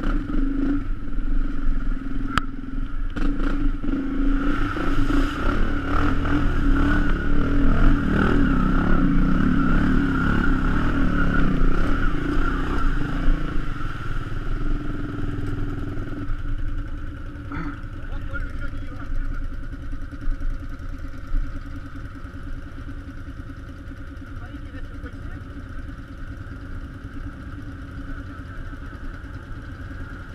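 Quad bike (ATV) engine running, louder through the first half, then dropping to a quieter, steady drone at about sixteen seconds.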